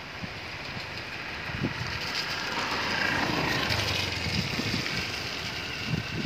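Outdoor field ambience: a steady rushing noise that grows louder about two seconds in, with irregular low thumps of wind on the microphone.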